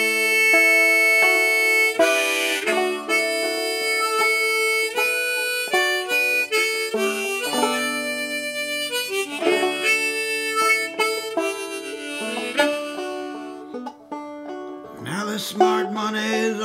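Clawhammer-style five-string Whyte Laydie open-back banjo picking a tune together with a harmonica on a neck rack playing held, sustained melody notes over it.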